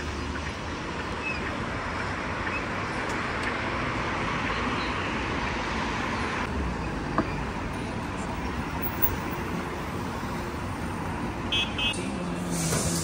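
City street traffic at a busy intersection: a steady wash of passing cars and scooters, with a louder hiss that cuts off about six and a half seconds in. There is one sharp click about seven seconds in, and a few quick high beeps near the end.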